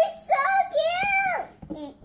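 A young girl's high voice singing drawn-out, wavering notes, which bend up and then fall away about a second and a half in.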